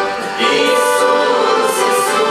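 Mixed male and female voices singing a gospel song over accordion accompaniment. The sound dips briefly between phrases just after the start, then the singing comes back in.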